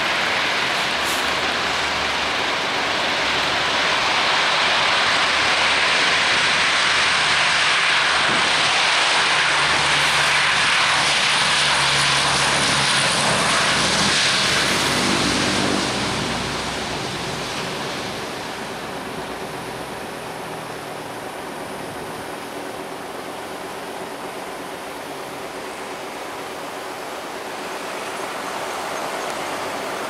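Four Allison T56 turboprop engines of a Lockheed C-130H Hercules at takeoff power during the takeoff roll: a loud rushing noise over a low propeller drone. It is loudest in the first half, drops away after about 16 seconds as the aircraft passes, and swells again near the end as it lifts off and climbs.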